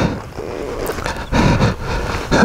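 Boots scuffing and sliding on loose dirt and rock on a steep slope, in uneven bursts with a louder scrape about one and a half seconds in, over wind rumbling on the microphone.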